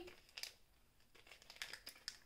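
A few faint, short crinkles of a small plastic wax-melt wrapper being handled, over near silence.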